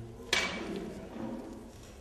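A single sharp metallic clank about a third of a second in, ringing briefly and fading, from a microphone stand being handled.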